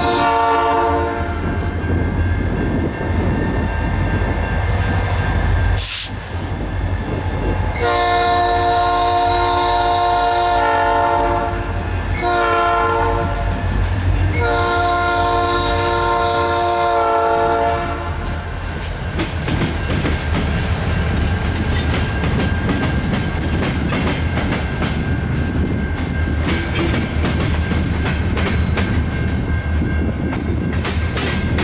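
Norfolk Southern EMD SD40-2 diesel locomotives passing with a steady low engine rumble. The lead unit's air horn ends a blast about a second in, then sounds long, short, long between about 8 and 17 seconds: the standard grade-crossing signal. There is a sharp bang about six seconds in, and from about 18 seconds freight cars roll by with a clickety-clack of wheels over rail joints.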